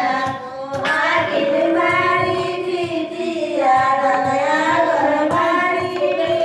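Group of women singing a traditional wedding folk song of the turmeric-pounding rite together, in long held notes that bend slowly in pitch, with faint regular knocks underneath.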